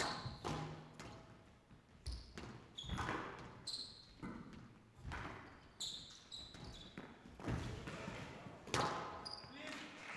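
Squash rally: the ball cracks off rackets and the court walls about once a second, with short high squeaks of players' shoes on the court floor.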